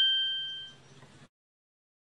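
Final bell-like note of a keyboard intro jingle ringing and fading out over about a second, followed by silence.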